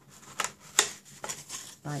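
Folded cardstock pinwheel box being opened by hand: a few quick, crisp crackles and rustles from the paper flaps, the sharpest a little under a second in.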